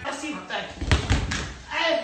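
A person falling onto a tiled floor: one heavy thud about a second in.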